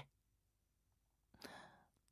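Near silence, then about a second and a half in a single soft, breathy exhale from a man close to the microphone, lasting about half a second.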